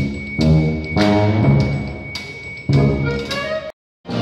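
A brass wind band playing loud, held chords, each begun with a sharp accent, about five in a row. The sound cuts off suddenly near the end.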